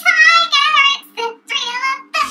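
A woman singing wordlessly in a very high, wavering voice. A long held phrase is followed by a few short bursts.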